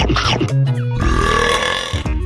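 A long, rough burp about a second in, following a short throaty sound, all over plucked-guitar background music.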